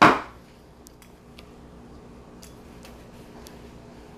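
A brief loud swish at the very start, then a few faint, scattered metal clicks and clinks as a stainless espresso portafilter and its basket are handled and wiped.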